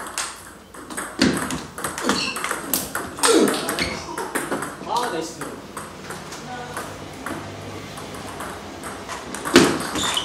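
Table tennis ball making sharp, irregular clicks as it bounces on the table and is struck by the paddles, with people's voices in the first half. A louder series of hits comes near the end as a rally begins.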